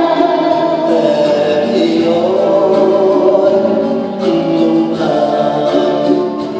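Live symphony orchestra accompanying singers, with long held sung notes over the strings.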